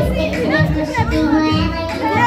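Music playing with several children's and adults' voices talking and singing over it, a dense, continuous mix.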